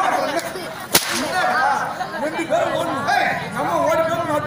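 A single sharp crack of a comic stage blow about a second in, with voices on stage around it.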